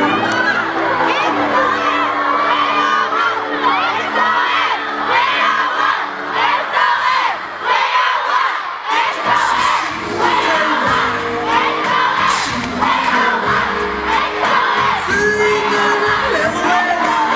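A large crowd of fans screaming and cheering with many high-pitched voices, loud and continuous.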